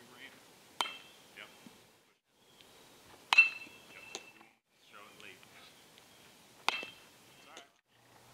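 Metal baseball bat striking pitched balls, three separate hits, each a sharp ping with a brief ring; the middle hit is the loudest.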